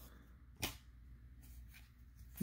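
Mostly quiet room with one short, sharp click a little over half a second in: a baseball card snapping as it is moved from the front of a hand-held stack to the back.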